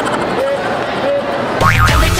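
Crowd voices in a busy mall, then, about a second and a half in, a quick sliding sound effect and an added dance track with a heavy bass beat cut in abruptly.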